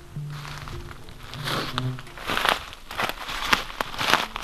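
Footsteps and rustling in dry fallen leaves on a forest floor: irregular crunches and crackles through the second half, after a brief low steady tone in the first second.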